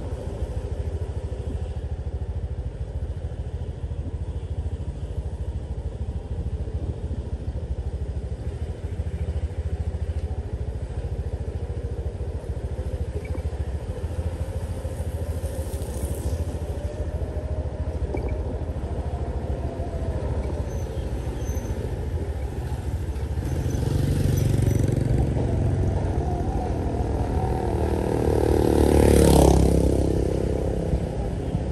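Motorcycle engine running steadily at low road speed, with a rumble of road and wind noise. The engine sound grows louder from about three quarters of the way through and peaks just before the end.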